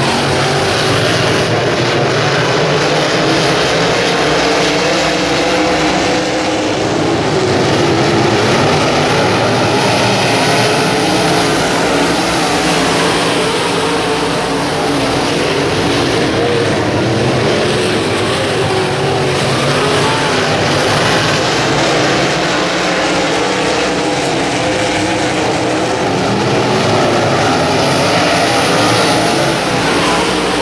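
Several UMP dirt-track modified race cars with V8 engines running laps at racing speed. It is a continuous loud engine drone whose pitch rises and falls as the cars go through the corners and past the straight.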